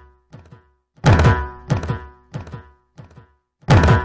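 Dramatic background music built on heavy drum hits, each sliding down in pitch, over a faint held tone. One run of hits starts loud about a second in and fades over about two seconds, and another strikes near the end.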